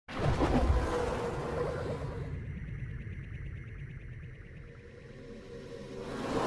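Synthesized intro sting for a logo animation: a sudden, full hit that fades slowly with a long echoing tail, then a new swell building near the end.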